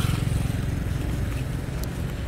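A bus's diesel engine running with a steady low rumble, heard from inside the passenger cabin.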